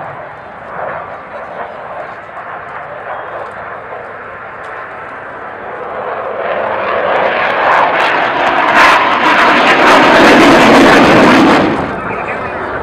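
HAL Tejas fighter's single GE F404 turbofan: jet noise that swells over the second half as the jet passes close, loudest near the end, then cuts off suddenly. Crowd voices are heard under the quieter first half.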